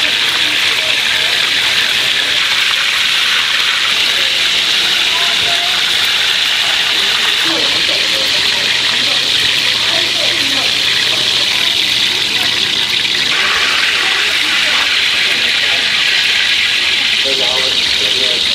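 Beef pancakes deep-frying in a large pot of hot oil: a loud, steady sizzle, with faint voices underneath.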